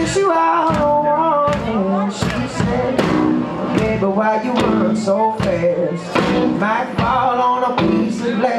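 Live band music with singing, and hand claps keeping a steady beat about every three-quarters of a second.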